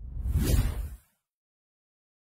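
A whoosh sound effect for an animated logo reveal, with a deep low end, swelling and fading away within about a second.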